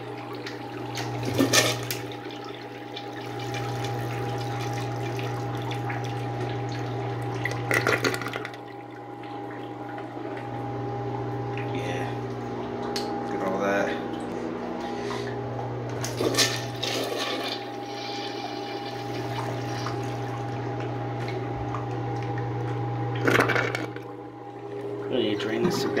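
Water rushing and swirling through a miniature model toilet bowl as it flushes blue-dyed water, over the steady hum of a small electric water pump. Several sharper splashes stand out along the way.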